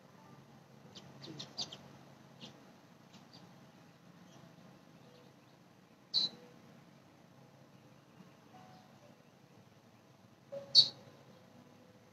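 A few short bird chirps over quiet background: faint ones in the first couple of seconds, a louder single chirp about six seconds in and another near the end.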